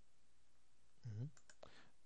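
A few light computer mouse clicks about a second and a half in, just after a brief vocal sound.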